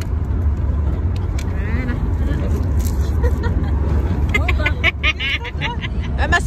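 Steady low road and engine rumble inside a moving car's cabin, with a few light clicks in the first half.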